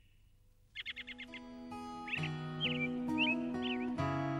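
Birds chirping over soft music. After a moment of near silence comes a quick run of high chirps about a second in, then single chirps every half second or so as sustained and plucked notes build underneath.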